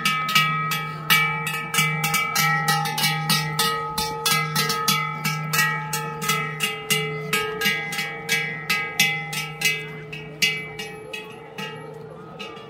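A large cowbell hung on a strap around a walking cow's neck, clanging about three times a second in step with its stride, each stroke ringing on. It grows fainter over the last couple of seconds.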